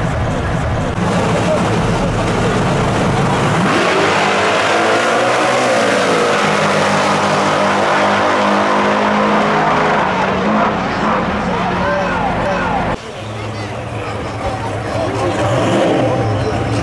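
Two drag-race cars launching off the line and accelerating hard down the strip, their engines climbing in pitch for several seconds and then fading away. After an abrupt change near the end, another race car's engine rumbles low at the line, with crowd voices.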